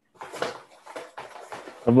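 Serrated cardboard cutter scraping and sawing through corrugated cardboard, a run of short, irregular scratchy rasps.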